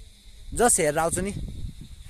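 A young man's voice speaking a short phrase about half a second in, over low rumble from wind on the microphone.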